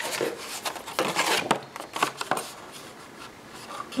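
Folded black cardstock being handled on a cutting mat: a run of short rustles, rubs and scrapes of stiff paper in the first two and a half seconds or so, then quieter.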